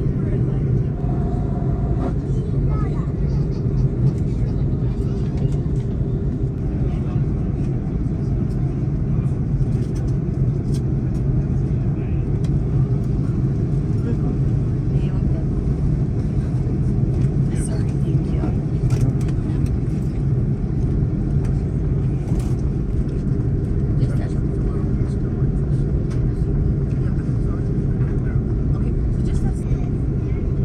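Cabin sound of an Airbus A330-200 taxiing on its Rolls-Royce Trent 700 engines at idle thrust: a steady low engine drone and taxi rumble, with a few faint clicks.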